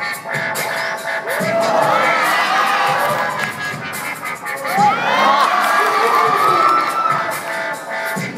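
A crowd of spectators cheering and whooping in two waves, the first about a second and a half in and a louder one about five seconds in, over electronic dance music.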